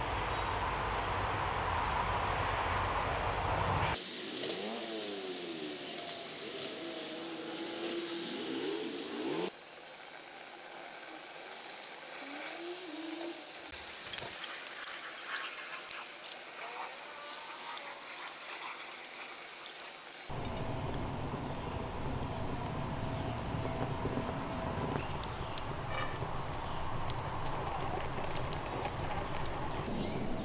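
A small wood fire of newspaper and kindling sticks catching in a rocket stove's firebox, with scattered crackles and snaps in the middle stretch. A steady low rumble runs at the start and again in the last third.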